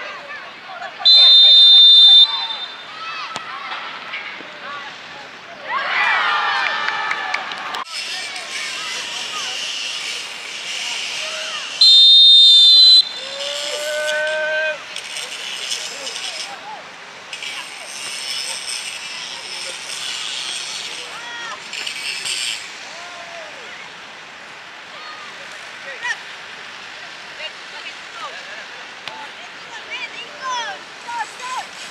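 Referee's whistle blown twice, each a single high blast about a second long, the first about a second in and the second about eleven seconds later. Players' shouts are heard around and between the blasts.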